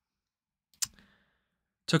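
A computer mouse clicking once, sharp and short, a little under a second in, with a brief faint tail.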